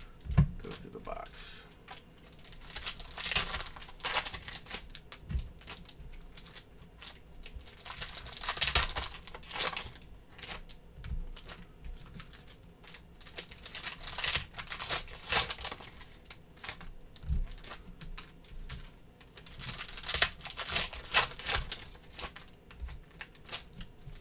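Foil trading-card pack wrappers being torn open and crinkled by hand, in irregular bursts.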